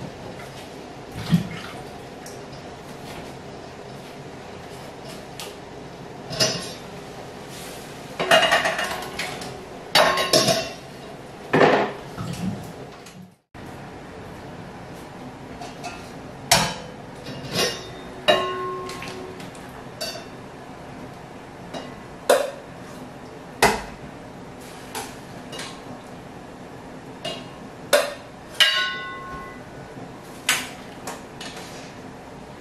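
Stainless steel colanders and pots knocking and clinking at irregular intervals as tomatoes are handled, a few strikes leaving a short metallic ring, with water splashing from tomatoes being washed in a sink.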